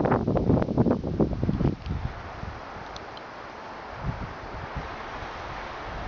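Wind buffeting the microphone: a loud, gusty rumble for about the first two seconds, then dropping to a steadier, quieter hiss.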